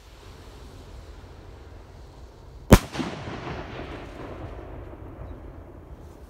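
A Radioactive Rockets consumer firework rocket bursting high overhead: a single sharp, loud bang about three seconds in, followed by a tail that fades away over the next few seconds.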